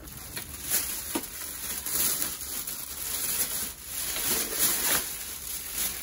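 Thin plastic garbage bag rustling and crinkling as metal wire racks are pushed into it, with a few light clinks of the wire frames.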